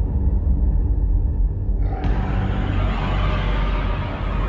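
Atmospheric intro of a thrash metal album: a heavy, deep rumble, joined about halfway through by a wash of higher, hissing noise.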